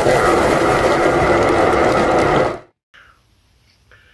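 Loud, dense edited-in sound effect, a noisy rush with a few held tones, that cuts off abruptly about two and a half seconds in, followed by faint room tone.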